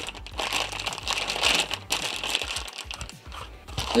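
Thin clear plastic bag crinkling and rustling irregularly as a pistol replica is wrapped in it and handled.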